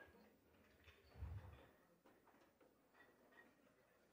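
Near silence: faint room tone with a few soft ticks and a low thump about a second in.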